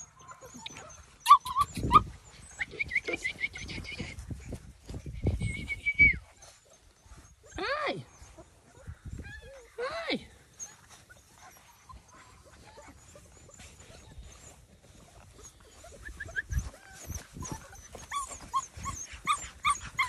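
Young mini Bernedoodle puppies whining and yipping: several high, thin whines in the first few seconds, then two sharp falling yelps around the middle, with softer squeaks near the end.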